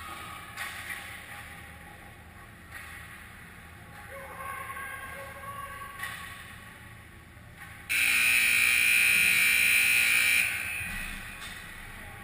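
Ice rink's scoreboard horn sounding once, about eight seconds in: a steady, loud tone that starts abruptly, holds for about two and a half seconds, then cuts off and dies away in the arena's echo. Before it, faint rink noise.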